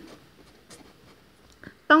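Felt-tip pen writing on paper over a clipboard: a faint scratching of short pen strokes as a few words are written out.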